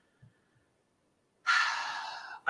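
Near silence, then about one and a half seconds in a person's breath into the microphone, a short hiss that fades away.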